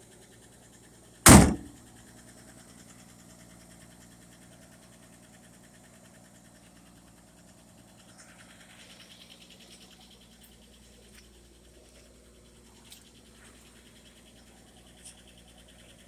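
A car door on a 1960 Chevy Biscayne is slammed shut once, about a second in; it is the loudest sound. After that only a faint, steady hum remains, from the car's engine idling as it warms up.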